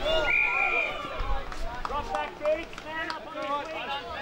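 Spectators and players shouting during play, several voices overlapping in short calls, with one held high call near the start.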